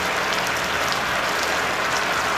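Cornflour-thickened chilli sauce boiling in a nonstick pan over high heat: a steady, even bubbling sizzle.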